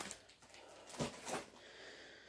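Faint rustling of plastic-wrapped frozen food packages being handled, twice in quick succession about a second in, against quiet room tone.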